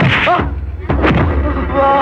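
Two dubbed fight-scene hit effects for a kick and a blow, one at the start and one about a second in, each a sharp crack followed by a low boom. A cry sounds over the first hit, and a held music chord comes in near the end.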